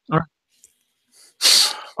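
A person's loud, breathy burst of air right into the microphone, about half a second long, about a second and a half in, after the spoken word "All right".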